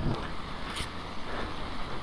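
Wind buffeting the camera microphone: a steady low rumble with hiss, and a brief hiss a little under a second in.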